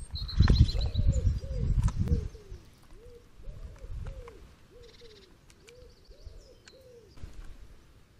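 A pigeon cooing over and over, about two soft arched coos a second. In the first two seconds there are louder low knocks and rumbles, and a few high chirps from a small bird at the start.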